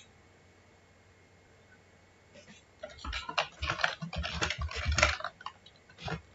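Computer keyboard typing: a quick run of keystrokes starting about three seconds in and lasting some two and a half seconds.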